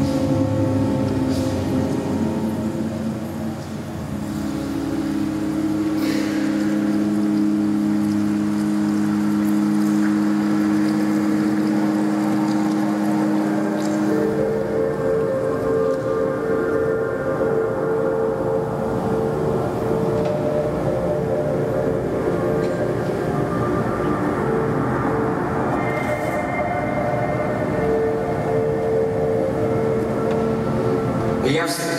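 Organ playing slow, long-held chords over a dense, steady wash of sound. The chord changes about four seconds in and again about fourteen seconds in.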